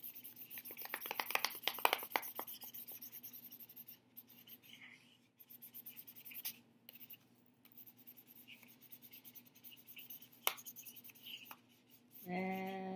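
Felt-tip marker scribbling on folded paper in quick back-and-forth strokes, heaviest in the first few seconds and lighter after. A single sharp tap about ten and a half seconds in.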